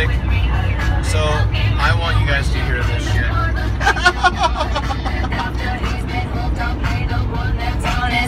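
Music with singing playing on a semi-truck cab's stereo, over the steady low drone of the truck's engine and road noise.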